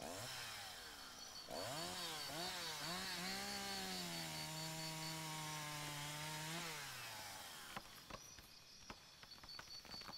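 Chainsaw sound effect: revved in a few bursts, then running at a steady pitch as if cutting, before the revs drop and it stops about seven and a half seconds in. A few sharp clicks or cracks follow near the end.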